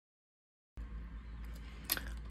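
Dead silence at first, then quiet room tone with a low hum. Several faint clicks follow, ending in one sharper click near the end, from a lock pick and tension wrench working in a padlock's keyway.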